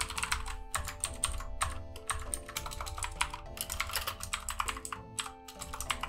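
Typing on a computer keyboard, a quick irregular run of clicking keystrokes, over quiet background music with sustained notes.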